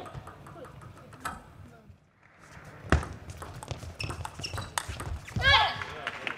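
Table tennis rally: a sharp crack of a ball on racket and table about halfway through, then a run of lighter ball clicks. Near the end a player gives a loud shout as the point is won.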